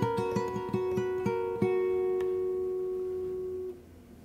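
Solo acoustic guitar fingerpicking a phrase of plucked notes, then letting a chord ring for about two seconds until it is damped near the end.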